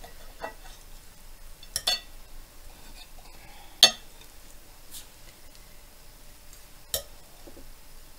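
A knife and spatula clinking and scraping against a ceramic plate as a pancake is cut into pieces and lifted apart: a few sharp clinks, a pair just under two seconds in, the loudest at about four seconds, another near seven.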